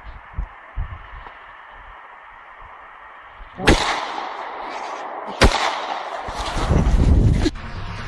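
Two handgun shots about a second and a half apart, each a sharp crack trailed by a short echo, then a second or so of loud rough noise that cuts off suddenly.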